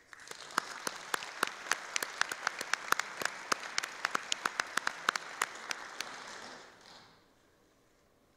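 Audience applauding, with many loud, sharp individual claps standing out above the crowd's clapping. The applause dies away near the end.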